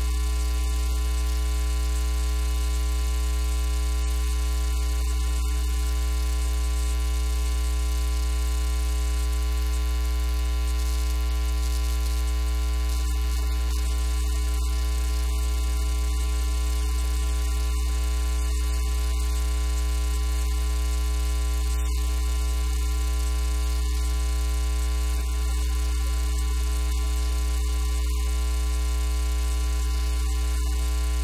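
Loud, steady electrical mains hum: a low, constant buzz with a stack of steady overtones above it that stays unchanged throughout.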